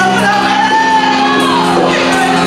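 A woman singing a worship hymn loudly into a handheld microphone over sustained instrumental accompaniment. She holds one long note that slides down near the end.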